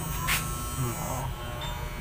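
Electric hair clipper running with a steady low buzz and no rattle: the noise is gone now that its thin Starrix blade has been shimmed with plastic and oiled.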